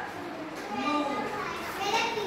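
Several young children's voices chattering and calling out at once, overlapping and unintelligible.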